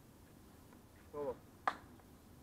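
A single sharp snap about a second and a half in, just after a man says a short word; the rest is faint background.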